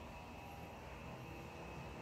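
Faint, steady background noise during a pause in talk: room tone.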